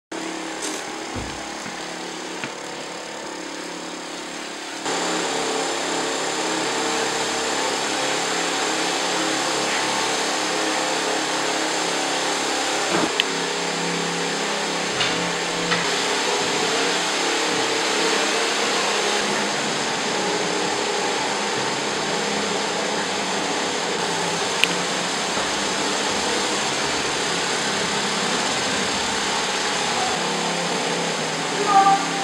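Backpack disinfectant sprayer running: a steady hiss of spray from the wand, with a faint pump hum, growing louder about five seconds in.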